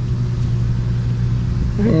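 A steady low engine hum running without change, with a constant low drone and rumble underneath.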